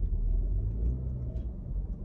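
Low, steady rumble of a car's engine and tyres heard from inside the cabin as it drives slowly.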